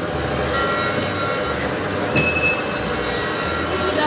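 Busy indoor mall ambience: a steady low hum with a few short held electronic tones, and a brief high beep about two seconds in.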